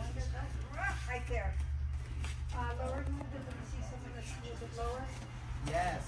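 Indistinct voices of people talking in several short stretches, over a steady low hum.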